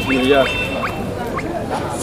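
A few short, high, rising squeaks from poultry, spaced across about two seconds, over a steady high-pitched whine and the general noise of the market.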